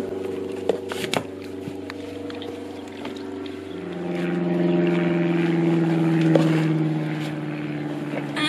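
A steady low engine hum, growing louder from about three and a half seconds in and dropping slightly in pitch toward the end. A few light knocks come in the first second or so.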